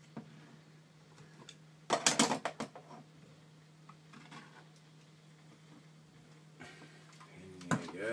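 A brief rattling clatter of clicks and knocks about two seconds in, from a metal beer-kit extract can being handled, then a few faint knocks and a single click near the end, over a steady low hum.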